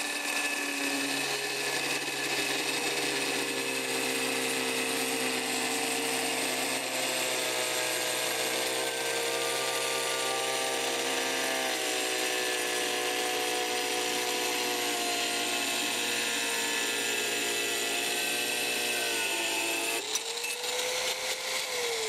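Angle grinders with 4-inch diamond tile blades cutting ceramic tile, a steady high motor whine with several tones over a cutting hiss. About two seconds before the end the steady sound breaks off and a single whine glides down as a grinder winds down.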